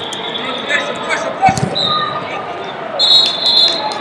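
Referee whistles blowing several times in a large echoing hall over a murmur of voices: one fades out about a second in, a short one comes about two seconds in, and a longer, louder one starts about three seconds in. A single low thump comes about a second and a half in.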